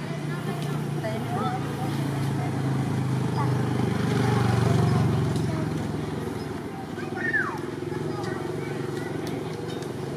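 A motor engine running low and steady, growing louder toward the middle and then fading, with faint voices in the background.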